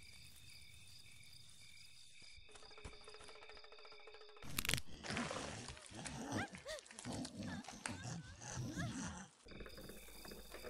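Crickets chirping in a steady night ambience, giving way about two and a half seconds in to a steady low drone. About four and a half seconds in a loud, sudden burst of growling and snarling creature voices with high rising squeals runs for about five seconds, then the crickets return.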